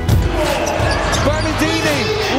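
Live basketball game sound: a ball bouncing on the court, and from about a second in a run of short squeaks that rise and fall in pitch, typical of sneakers on a hardwood floor.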